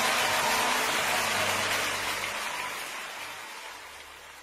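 Live crowd applause, an even patter of clapping, fading out steadily at the close of a live worship song.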